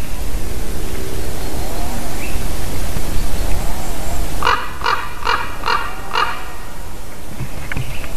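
A common raven calling five times in quick succession about halfway through, roughly two short calls a second, over a steady low rumble.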